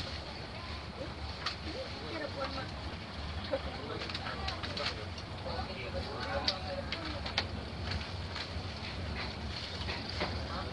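Steady low rumble of a passenger train coach in motion, heard from inside the carriage, with faint indistinct passenger voices and a few scattered sharp clicks.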